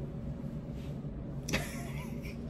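Low steady electrical hum of a quiet room, with a soft laugh about a second in and one sharp click at about a second and a half.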